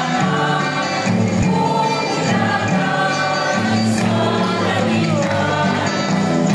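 A group of voices singing a Christmas song together over music, continuous and loud.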